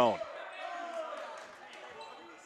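Faint sounds of a basketball game on a gym court: a ball bouncing on the hardwood and players moving, over the low murmur of distant voices in the hall.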